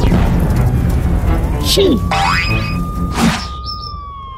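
Cartoon soundtrack: background music with a steady low beat under a long held tone that slowly dips and rises, with comic sound effects on top: a boing just before two seconds in, a rising zip right after, and a quick swish a second later.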